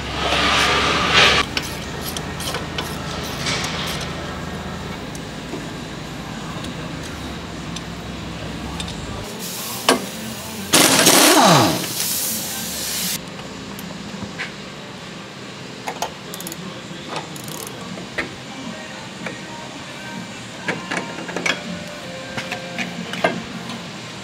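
Air impact wrench loosening suspension nuts in bursts: a short run at the start and a longer one about eleven seconds in that falls in pitch as it winds down. Scattered sharp knocks of metal work and background music run underneath.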